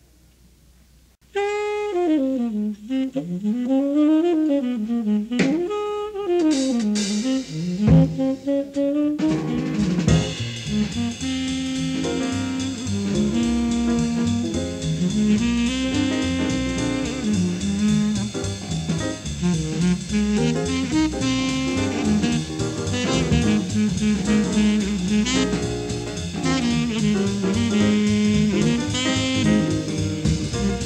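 Live jazz: a tenor saxophone enters alone about a second in, playing a free-flowing melodic line. About ten seconds in, the rest of the quartet joins in with bass, drums and piano, and the tune runs at a swinging tempo.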